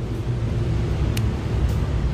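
A steady low rumble in the background, with one short light click about a second in as the car stereo head unit is handled.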